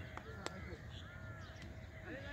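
Faint crows cawing, with scattered distant voices of players and a single sharp click about half a second in.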